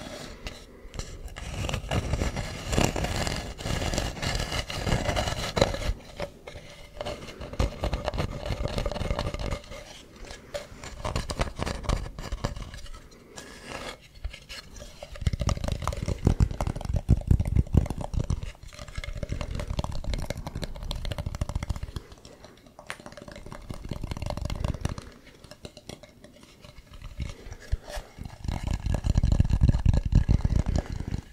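Fingers scratching and rubbing the ridged woven-fibre and wooden surface of a carved object held at the microphone. The scratching comes in several spells of dense crackling, with deep rumbles as the object is handled against the mic and short quieter gaps between spells.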